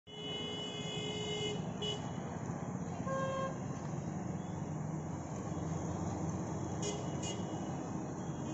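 Road traffic with a steady low rumble and several vehicle horns honking: a long horn over the first second and a half, a shorter one about three seconds in, and two quick toots near the end.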